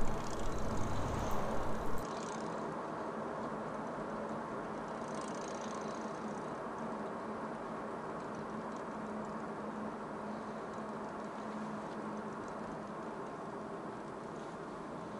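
Steady road noise of a car heard from inside the cabin, with a faint even engine hum. About two seconds in the sound drops abruptly to a quieter, duller level and then stays even.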